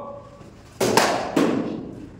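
Two sharp knocks of cricket bats striking balls, about half a second apart, each ringing on briefly in the indoor net hall.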